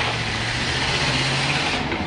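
Car engine accelerating as a car drives off: a low, steady hum that rises slightly in pitch, then fades near the end.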